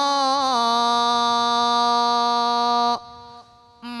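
A Buddhist monk's solo voice chanting kavi bana, Sinhala sermon verse, through a microphone. He holds one long sung note for about three seconds, wavering slightly near the start, then breaks off. The voice comes back just before the end.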